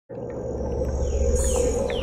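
Opening sound effect made by a synthesizer: a steady low hum under a held high tone, with a few short falling whistles.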